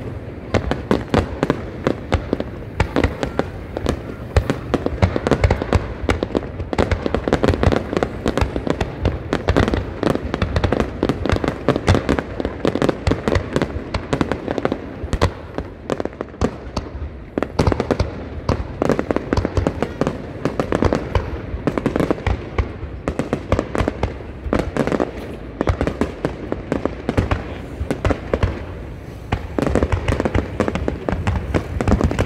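Fireworks display: a rapid, unbroken barrage of aerial shell bursts and crackle, many bangs a second.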